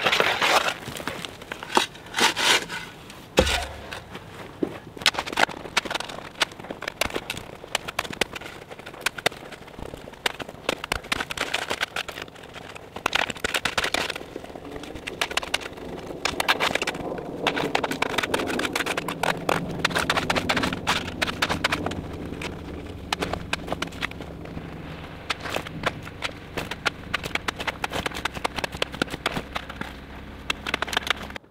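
Steel shovel scraping and digging into gravelly soil, with irregular scrapes, knocks and dirt being thrown while a trench is backfilled. A low steady drone runs underneath from about halfway through.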